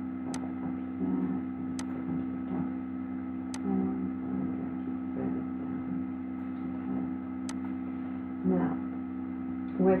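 Steady electrical mains hum picked up on the recording, with four sharp computer mouse clicks spread through it.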